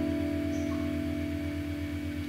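Steel-string acoustic guitar with its last fingerpicked chord ringing out and slowly fading, with no new notes played.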